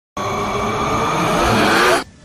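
An engine revving up, rising in pitch throughout, then cutting off suddenly.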